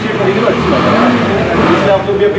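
Men's voices talking in a group, with a broad rushing noise beneath them that swells near the end.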